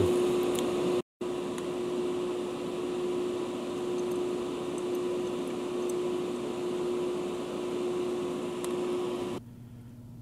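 A small electric motor running steadily, a hum with one constant tone over a haze of moving air. It drops out briefly about a second in and cuts off abruptly near the end. A few faint light ticks sit over it.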